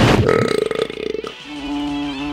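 A person burping: a long, buzzy rasp lasting about a second. It is followed by a steady held note of music.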